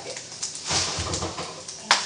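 Brief rustling about a second in, then a single sharp click near the end.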